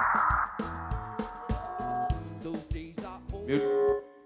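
Live band playing an upbeat pop-rock song: a drum kit keeps a steady beat under bass and keyboard, with a male voice singing into the microphone near the end.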